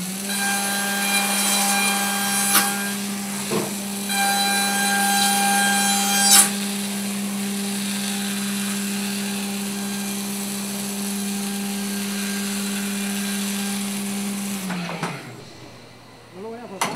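Haas VF-2SS CNC vertical mill cutting aluminum with a milling cutter: a steady whine from the spindle and cut, with a strong cutting tone for the first six seconds or so, broken by two sharp clicks. Near the end the spindle spins down and its tone falls away.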